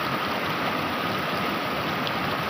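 Fast river water rushing steadily over rocky rapids.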